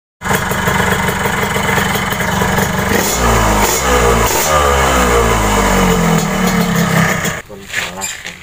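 Yamaha RX-King's tuned, high-compression two-stroke single-cylinder engine revving hard. It holds a fast, steady buzz for about three seconds, then the revs swing up and down in several rises and falls. The sound drops away suddenly near the end.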